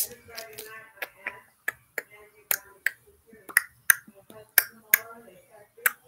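About a dozen sharp clicks or snaps, irregularly spaced and often in close pairs, with a soft voice humming or murmuring between them.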